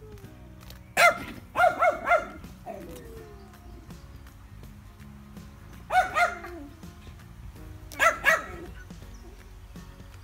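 Dog barking in short pitched barks: a quick run of about four barks a second in, then two barks around six seconds and two more around eight seconds.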